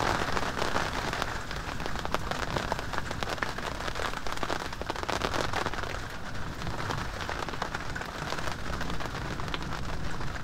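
Heavy night rain falling steadily, a dense patter of many separate drop hits.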